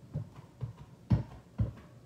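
Ink pad patted repeatedly onto the face of a large rubber background stamp, making about five soft, dull taps, the loudest just past the middle.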